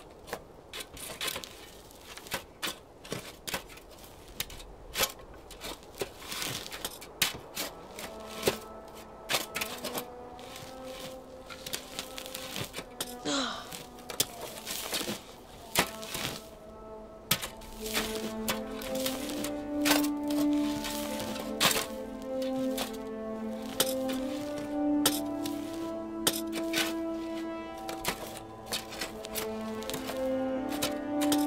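Shovels and spades digging into soil: repeated, irregular chopping strikes of the blades into the earth. Background score music comes in about eight seconds in and grows fuller in the second half.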